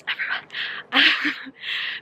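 A woman panting hard, out of breath from climbing a steep hill: about three long, breathy breaths, with a short "um" among them.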